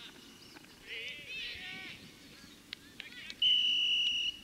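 High-pitched shouts from players on the pitch, then a referee's whistle blown in one steady blast of about a second near the end, the loudest sound, stopping play.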